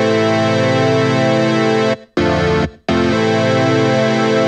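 Software synthesizer chord pad (Native Instruments Massive) with eleven unison voices, played as a held, organ-like chord. The chord shimmers and wavers as the unison voices are detuned. It stops briefly just after two seconds in, sounds again for half a second, then holds once more.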